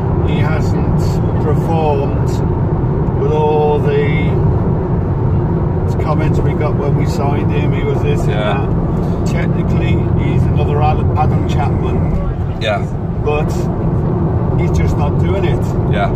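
Steady low rumble of a car's engine and tyres heard from inside the cabin while driving, with people talking over it.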